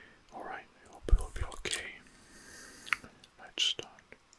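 A man whispering close to the microphone, breathy and unvoiced, in short phrases broken by a few sharp mouth clicks.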